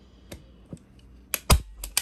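A yellow DeWalt hand staple gun being handled over a plywood stool seat: a few light clicks, then one sharp snap with a dull thud about one and a half seconds in, and a couple more clicks near the end.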